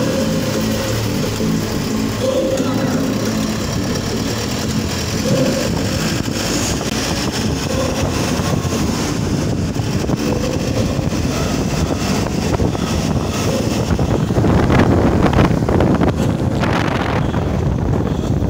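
Steady low rumbling noise of wind on a phone microphone, swelling for a few seconds near the end.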